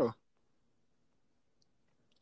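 Near silence: faint room tone after the last syllable of a spoken word, with a tiny faint tick about one and a half seconds in.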